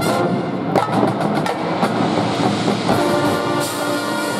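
Drum corps percussion playing a rhythmic passage of drum and mallet strokes, with the horn line coming back in on held notes near the end.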